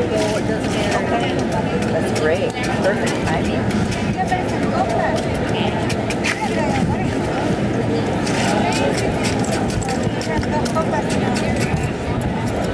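Ice being carved from a large block, the tool cutting and chipping with many short cracks and scrapes, over steady crowd chatter.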